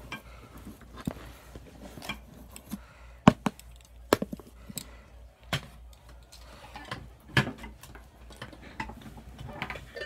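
A measuring scoop stirring dry chopped herbs in a plastic bowl. Irregular clicks and knocks of the scoop against the bowl, about one a second, over a faint rustle.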